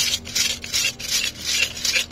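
A cup of fortune sticks being shaken, the sticks rattling against each other and the cup in quick rhythmic shakes, about three a second, as a stick is drawn for a lucky number.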